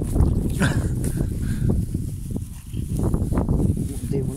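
Low, uneven rumble of wind buffeting a phone microphone, mixed with rustling and handling knocks as the phone is carried through grass.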